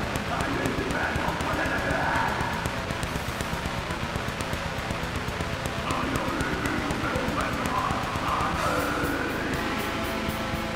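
Black metal song: fast, rapid-fire programmed drums under distorted guitars, with a harsh vocal line over it in the first couple of seconds and again from about six seconds in.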